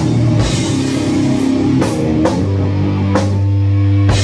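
Doom/sludge rock band playing live: a heavily distorted electric guitar riff over a drum kit, with cymbal crashes. About halfway through, the guitar settles onto a low, sustained note.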